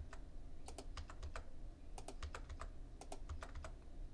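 Computer keyboard keys pressed in short clusters of faint clicks, mostly the Backspace key hit twice at a time to delete stray spaces and hyphens.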